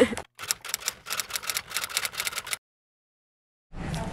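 A rapid run of sharp clicks, about eight a second, lasting about two seconds, then cutting off to dead silence.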